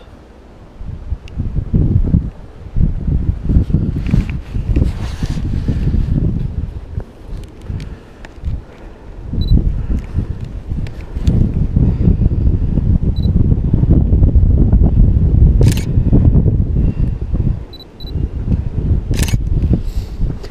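Wind buffeting the microphone in uneven gusts, with a few short high beeps of a DSLR's autofocus confirming focus and two sharp shutter clicks near the end.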